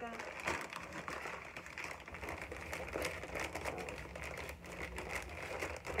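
Brown paper mailer envelope rustling and crinkling as it is handled and turned, a dense run of quick irregular crackles.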